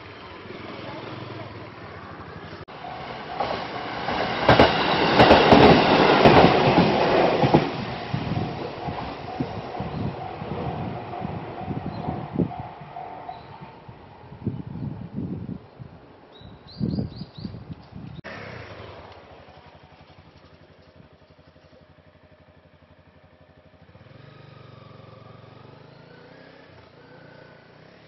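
An electric train passes over a level crossing. It is loudest for a few seconds as it goes by, then its wheels clack over the rail joints and fade. A repeating warning bell rings at the crossing while the train passes, and the sound cuts to quiet background about two-thirds of the way through.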